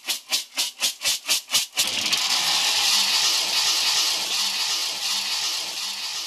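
Raw coffee beans tossed in a metal basin, a rhythmic rattle about five or six times a second. About two seconds in this gives way to a steady hiss as the beans are poured into a metal roasting drum.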